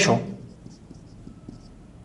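Marker writing on a whiteboard: faint short strokes.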